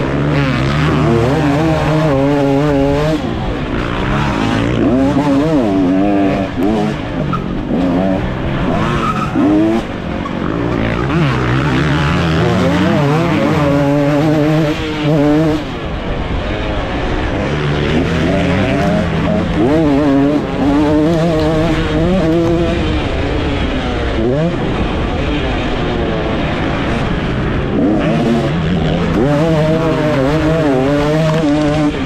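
2024 KTM SX 250 two-stroke motocross engine revving hard and falling off again and again as the rider works through the gears and corners, its pitch climbing and dropping every few seconds.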